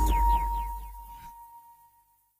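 Engadget's electronic audio logo sting: a deep bass hit with a few quick falling tones and one held high tone, all fading out over about two seconds.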